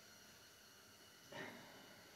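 Near silence: room tone, with one short, soft sound a little past halfway through.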